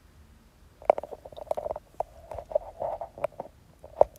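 Irregular clicks and soft rustling close to the microphone, starting about a second in: handling noise, as of a phone being moved or touched.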